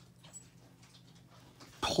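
Faint sounds of a ballpoint pen writing on paper, followed by a man's voice starting near the end.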